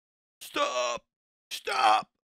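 A voice saying "Stop!" twice, about a second apart, each word drawn out.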